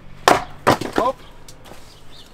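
A small hand splitting axe of about 1.25 kg, with a wide wedge angle, striking and splitting a firewood log on a chopping block: one sharp, loud crack of wood about a quarter second in, followed by a second, smaller knock.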